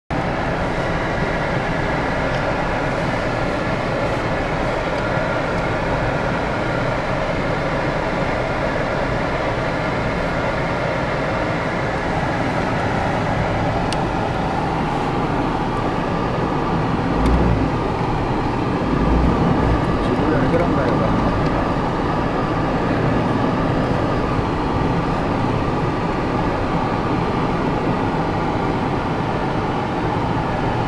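Inside a slowly moving vehicle: steady engine and road noise, with voices of people around it and a couple of heavy low thumps about 17 and 19 seconds in.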